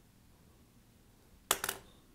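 Quiet room tone, then about one and a half seconds in a brief clatter of two or three quick clicks: a small hand tool knocking against the hard work board.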